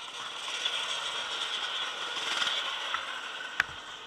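A steady mechanical rattle that builds over the first second and eases near the end, with one sharp knock shortly before it ends.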